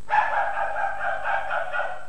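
A drawn-out, steady dog-like vocal sound from a cartoon soundtrack, held for almost two seconds and cutting off just before the end.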